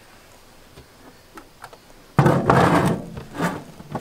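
A few light knocks, then a loud scraping rub about two seconds in and a shorter one a second later: a plastic five-gallon bucket toilet being pulled out over the trailer's wooden floor.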